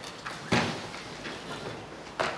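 A single sharp knock about half a second in, then fainter knocks and shuffling of things being moved about.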